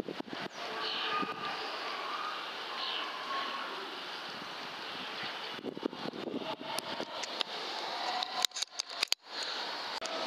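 Steady outdoor background hiss, then a run of sharp clicks and knocks from about six seconds in until near the end.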